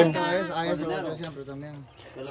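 People talking in conversation; a short spoken reply, then the voices trail off.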